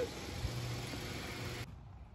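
Steady mechanical hiss with a low hum that joins about half a second in, cutting off suddenly about one and a half seconds in.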